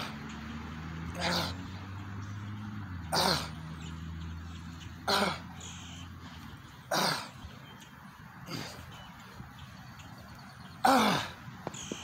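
A man's short, forceful exhalations, one with each pull-up rep, about every two seconds, six or seven times.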